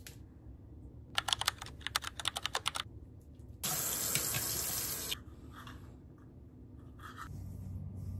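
A quick run of about a dozen sharp clicks, then a bathroom sink tap running for about a second and a half, starting and stopping abruptly.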